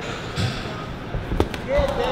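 Boxing gloves landing punches in a sparring exchange: a couple of sharp slaps in the second half, about 1.4 and 1.8 seconds in, over voices from the crowd.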